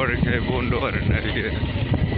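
A person talking over a steady low rumble of travel noise.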